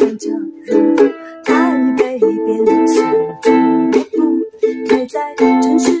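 Ukulele strummed in a steady rhythm, about two strokes a second, its chords ringing between strokes.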